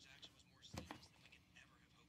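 Near silence: studio room tone with faint, low voices and a single short knock a little under a second in.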